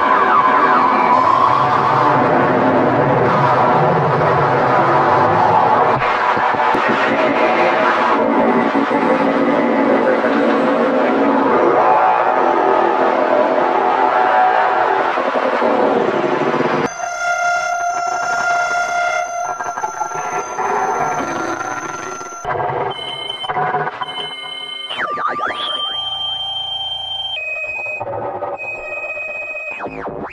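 Harsh noise music: a loud, dense wall of electronic noise that cuts off suddenly about halfway through. It gives way to sparse, stuttering high steady tones with a few sliding pitches.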